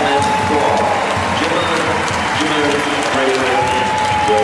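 Arena crowd clapping and cheering during a judo bout, a dense, steady wash of noise. Long held tones ring over it at the start and again near the end, with shorter lower ones in between.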